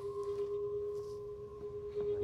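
A held drone from the drama's score: a steady pure tone with a fainter, higher tone above it, unchanging throughout.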